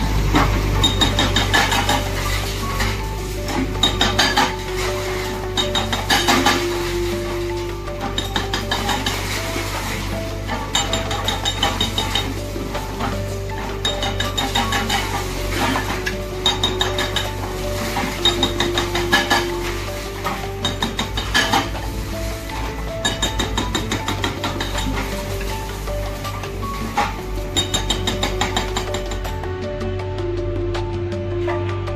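JCB backhoe loader's engine running steadily while its arm breaks down a brick and concrete wall, with irregular knocks and clatter of falling masonry.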